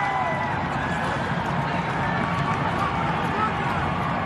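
Steady soccer-stadium ambience: a low murmur of voices with faint, scattered shouts.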